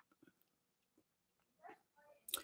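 Near silence: room tone, with a faint brief sound near the end.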